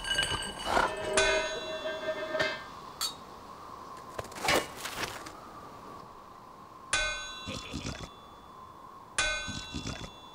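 Metal pots clanging in a cartoon sound effect, each strike ringing on with several bright tones. One clang comes about a second in, another near seven seconds and a third just before the end, with a short swish near the middle.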